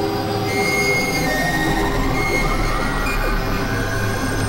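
Experimental electronic noise music: a dense, grainy synthesizer drone with a steady low hum beneath and thin high whistling tones that come and go, like squealing metal.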